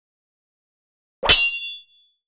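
A single sharp metallic clang with a short ringing tail, a logo sting sound effect, striking about a second and a quarter in and fading within about half a second.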